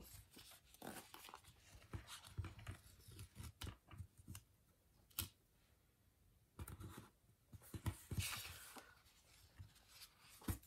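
Quiet rustling, crinkling and soft taps of a paper sticker sheet handled by fingers as stickers are peeled off and pressed down, with a longer, louder crinkle about eight seconds in.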